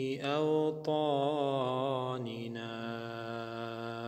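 A man chanting an Arabic dua (supplication) in long, wavering melismatic notes, over a low steady drone. About halfway through, the voice settles on one held note.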